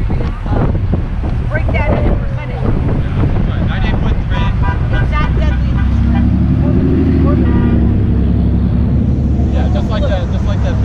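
Road traffic passing close by, with a heavier vehicle rumbling past in the second half; wind buffets the microphone and people talk nearby.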